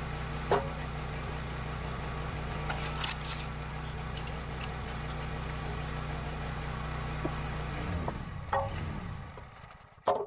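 Small gas engine on a Wolfe Ridge 28 Pro hydraulic log splitter running steadily, with a few sharp cracks and knocks from the wood. Near the end the engine winds down and dies, which the owner puts down to running out of gasoline.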